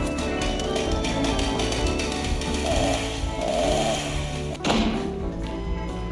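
Live stage-musical band music: held keyboard chords with a quick run of percussive taps, and a single hit near the end.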